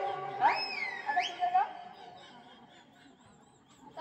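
A person's high-pitched voice giving two shrill cries that sweep sharply up in pitch and fall back, in the first second and a half. The sound then dies away to near quiet.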